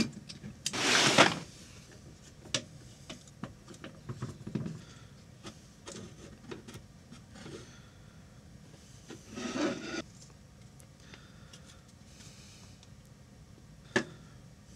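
Handling noise from taking the aluminium heat sink off an SGI Indigo2's R10000 CPU module: scattered light clicks and taps of small metal parts. Two short, louder rubbing sounds stand out, one about a second in and one about two-thirds of the way through.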